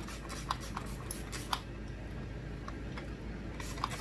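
A few short spritzes of water from a plastic trigger spray bottle onto curly hair, with light clicks and rustling as fingers work the wet curls.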